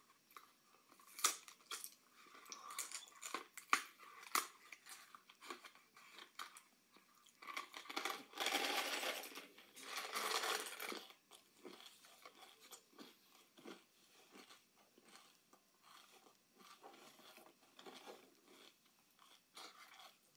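Crunching and chewing of candy-shelled Reese's Pieces, close to the microphone, with a few sharp clicks in the first five seconds. About seven and a half seconds in comes a longer, louder rustling rattle as candies are poured from the cardboard box into the mouth, followed by steady small crunches.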